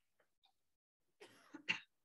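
A person coughing once, near the end, after a few faint small ticks.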